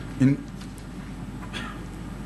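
A man speaks one short word, then a pause with only the steady low hum of the room.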